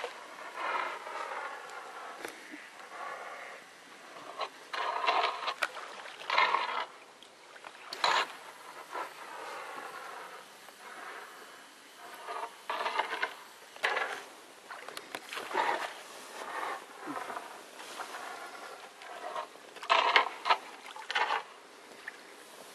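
A person's voice in drawn-out, wavering phrases with short pauses between them.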